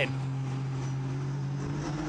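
Engine of a Ford EcoBoost-powered Formula 4 single-seater racing car, running at steady revs as one even, unchanging note.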